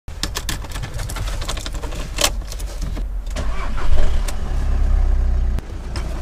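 A car engine starting: a rough, clicking stretch, then it runs with a steady low rumble that is loudest about four seconds in and falls back a little near the end.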